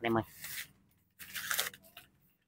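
Clear plastic sleeve crinkling as a fishing rod is drawn out of it: a short rustle, then a louder one in the second half.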